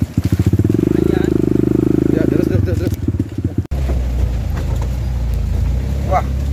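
A small engine, likely a motorcycle, running close by with a fast, even firing beat. After a sudden cut about halfway through, a steady low engine drone is heard from inside the cab of the Isuzu Elf microbus as it drives a wet, rutted road.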